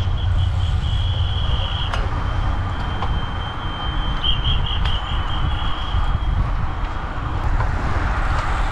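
Wind buffeting the microphone while riding a road bike at speed, heard as a steady low rumble. Over it a thin high-pitched whine pulses on and off and stops about six seconds in.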